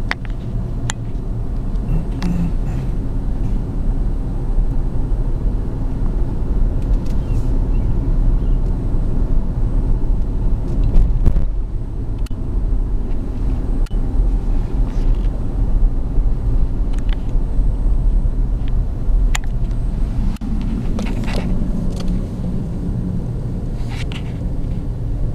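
Car cabin road noise while driving slowly: a steady low rumble of engine and tyres, with occasional light clicks and knocks.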